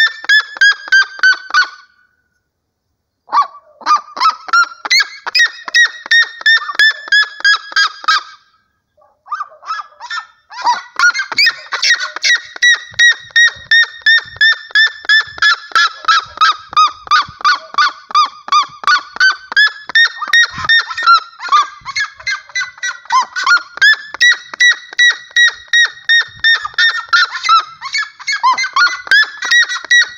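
Red-legged seriema calling: a loud, long run of rapid yelping notes, about four a second, broken by two short pauses in the first ten seconds, the pitch sagging and climbing in waves.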